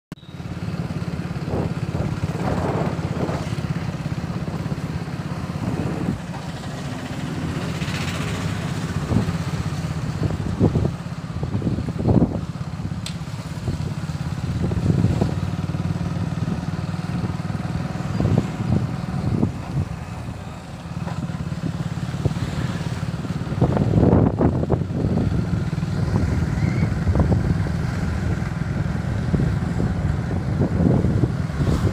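Engine of a moving vehicle running steadily while riding along a street, with wind buffeting the microphone in irregular gusts.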